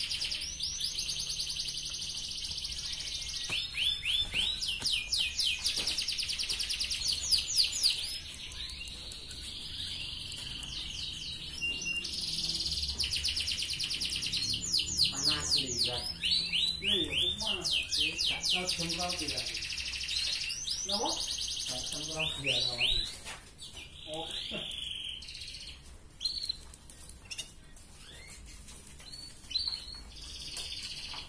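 Red canary singing vigorously: long, rapid rolling trills and runs of repeated sweeping whistled notes, broken by short pauses. The song quietens to scattered notes in the last few seconds.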